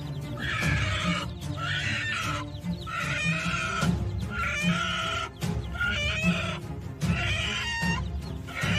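Background music with a steady low beat, over a string of short, high-pitched bird calls about one a second.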